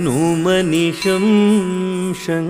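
Carnatic vocal music for Bharatanatyam: a singer holding long notes with ornamented, wavering pitch bends, with no clear words.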